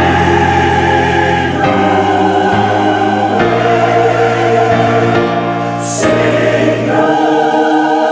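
Church choir singing long held chords in Portuguese, moving to a new chord every couple of seconds.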